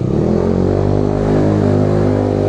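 Small motorbike engine running under throttle, its pitch rising briefly at the start and then holding steady, with wind and road noise over the microphone.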